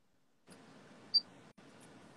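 Faint hiss of a live video call's audio line breaking up: it cuts in about half a second in and drops out briefly about a second and a half in. One short, high beep sounds about a second in.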